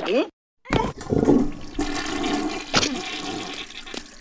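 Cartoon critters' wordless voices, broken by a short gap of silence, then a gush of rushing water like a toilet flush mixed with their voices, fading toward the end.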